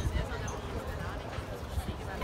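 Busy pedestrian street: passers-by talking indistinctly and walking, with low rumble and soft thumps on a walking handheld camera's microphone.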